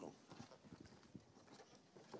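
Near silence with faint, irregular taps of footsteps on a hard floor.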